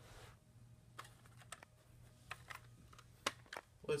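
Faint, irregular clicks and taps over a low steady hum, the handling noise of a phone being moved around in the hand; the sharpest click comes a little after three seconds in, and the hum stops shortly before the end.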